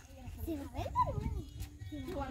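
Young people's voices talking and calling out briefly, fainter than the nearby speech around them, over a steady low rumble.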